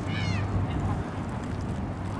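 Steady low outdoor rumble with one short, high-pitched cry near the start that falls in pitch.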